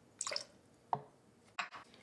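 Small handling sounds of a metal bar jigger over a steel shaker tin: a brief liquid-like rustle near the start, a single ringing clink about a second in, then a sharp knock as the jigger is set down on the wooden board.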